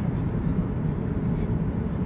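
Steady, low cabin noise of a Boeing 737-800 on approach, heard from inside the cabin: a constant mix of engine and airflow noise with no sudden events.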